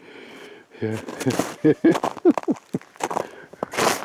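A man's voice making short, broken syllables, laughing or half-spoken, with a brief noisy rustle near the end.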